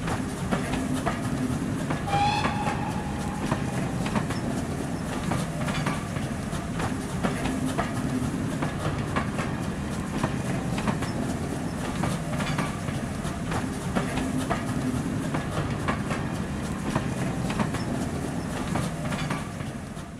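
Train running past with a steady low rumble and the repeated clickety-clack of wheels over rail joints. A short high whistle-like note sounds about two seconds in.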